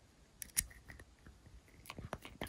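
A tiny toy poodle puppy gnawing on a chew, giving sharp, irregular crunching clicks. They start about half a second in, the loudest comes just after, and more cluster near the end. The owner thinks the puppy chews so much because its teeth are itchy.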